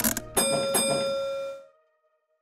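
Two bright bell-like chime strikes about half a second apart, each ringing on, as a short musical sting after a children's song; the sound then cuts off.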